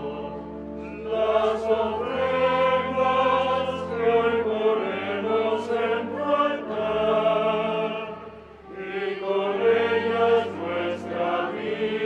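Choir singing a slow hymn in long sustained phrases, with a steady low note held underneath.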